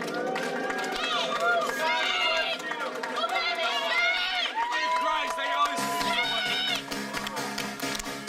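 Live synthpunk music, a held synthesizer drone, under a club crowd shouting and whooping. About six seconds in, a low bass part comes in suddenly.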